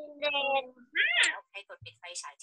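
Two short meow-like vocal calls: a held, steady one, then a brief one that rises and falls in pitch. A soft low bump comes near the end.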